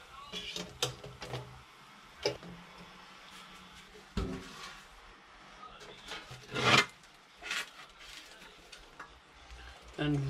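Clatter of a hinged wire braai grid and a stainless steel tray being handled and set on tiles: scattered clinks and knocks, the loudest about two-thirds of the way through.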